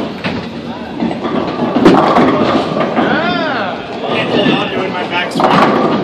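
Bowling ball released onto the wooden lane with a thud at the start, then rolling away with a rumble, amid voices in the bowling alley.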